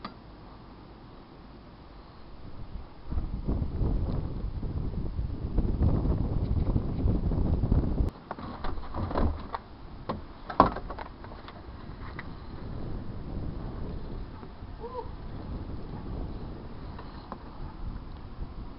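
Wind buffeting the microphone in a low rumble for several seconds, stopping suddenly, followed by a few sharp clicks and knocks.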